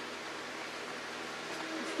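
Steady, even hiss of room background noise, with no distinct knocks, scrapes or stirring strokes.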